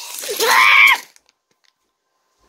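A person's loud, wordless yell that rises in pitch and is held high, ending about a second in.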